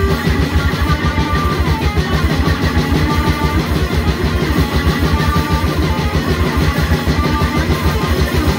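Death metal band playing live: heavily distorted guitar riffing over drums with a fast, even low pulse.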